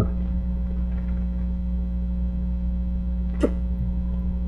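Steady low electrical hum on the recording, with one short sharp click about three and a half seconds in.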